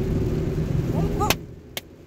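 Steady low rumble of road and engine noise inside a moving car's cabin, which cuts off with a sharp click a little past halfway, leaving a short quiet gap broken by one more click.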